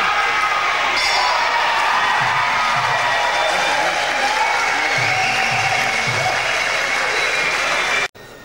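Fight-arena crowd noise, with voices, applause and music together, loud and steady throughout.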